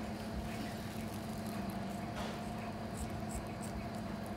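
A steady low hum, with a couple of faint snips about two and three seconds in from scissors trimming excess wet plaster-of-Paris bandage.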